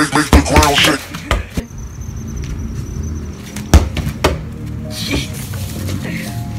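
Electronic background music that stops about a second in, then the thud of a football being kicked, followed by a few more sharp knocks, the loudest a little past the middle.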